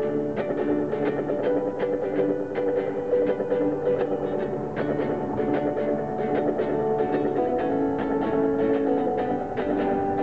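Electric guitar played through a small amplifier: a steady strummed rhythm with picked notes, no voice.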